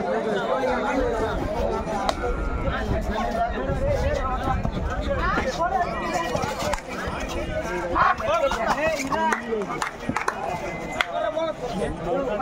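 Crowd of spectators at a kabaddi match shouting and chattering, many voices overlapping at once.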